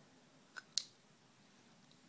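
Two small sharp clicks a quarter-second apart, about half a second in, from a Leatherman multi-tool being handled.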